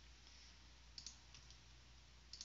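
A couple of faint computer mouse clicks about a second in, otherwise near silence.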